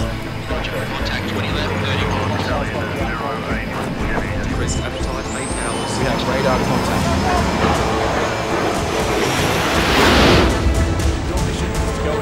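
A layered sound-design mix of music with indistinct voices and aircraft and vehicle noise. A short high rising whistle comes about five seconds in, and a loud whoosh swells and fades about ten seconds in.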